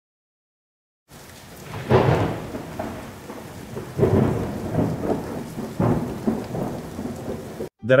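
Steady rain with three rolls of thunder, the first the loudest, starting after about a second of silence.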